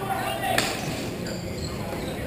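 Hockey game in a large hall: players' voices calling out indistinctly, with one sharp knock about half a second in, typical of a stick hitting the puck or ball.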